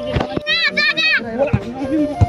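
Boys shouting and calling to each other while playing football, with a high, wavering yell about half a second in.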